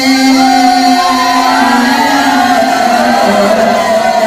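A man's voice chanting a naat, a devotional Urdu song, into a microphone, holding one long steady note for about three seconds before the melody moves on.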